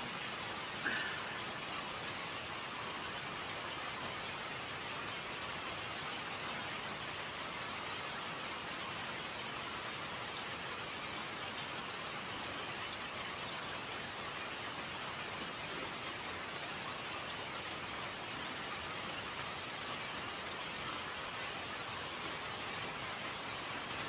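Steady rain falling, an even unbroken hiss.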